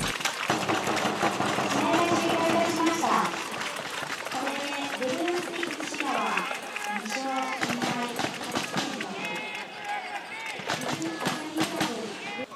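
Several people talking and calling out, fairly high-pitched voices, with scattered small clicks and knocks.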